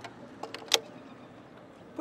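A single short, sharp click about three-quarters of a second in, over a faint steady outdoor background.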